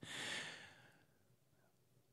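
A man's breath into a close microphone, a soft rush of air lasting about half a second that fades out, followed by near silence.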